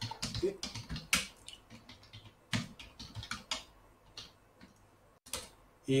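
Typing on a computer keyboard: irregular key clicks in short runs with brief pauses, thinning out toward the end.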